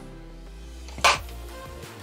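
Soft background music with steady sustained tones, and one short noise about a second in.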